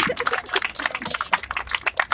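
A crowd clapping, a dense patter of many irregular claps.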